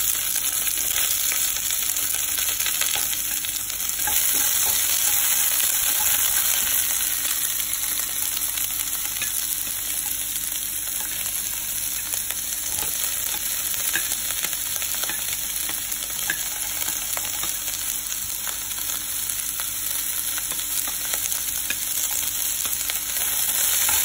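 Chopped vegetables (bell peppers, onions, broccoli, corn) sizzling steadily in a little hot oil in a nonstick pan, with light clicks and scrapes of a spatula stirring them.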